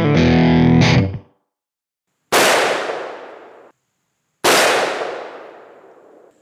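A short distorted electric-guitar music sting that stops about a second in, then two .454 Casull revolver shots about two seconds apart, each a sharp crack followed by a long fading echo.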